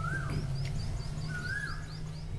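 A bird calling: a quick run of short high chirps, about five a second, with two lower whistled notes that rise and fall, one at the start and one about a second and a half in. A steady low hum runs underneath.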